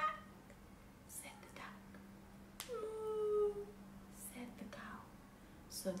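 A woman's soft, whispery voice reading and imitating animal noises, with one drawn-out call about two and a half seconds in. A steady low hum runs underneath.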